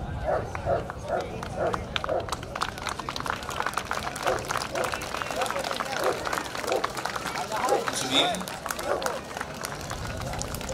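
Voices of onlookers around a show ring, with the quick footsteps of a handler running a large dog around the ring.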